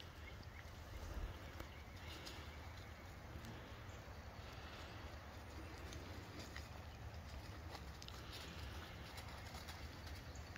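Faint outdoor background: a steady low rumble under a light hiss, with a few faint taps.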